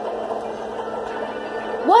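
Steady muffled background audio from a video game being played in the room, with faint talk over a steady low hum.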